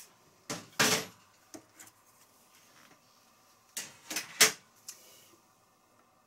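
Stopper plates being taken off a knitting machine's needle bed: a series of sharp clacks and knocks, a cluster around a second in and another, the loudest, around four seconds in.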